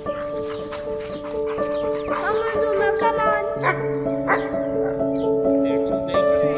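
Slow, gentle piano music: single held notes and chords played one after another.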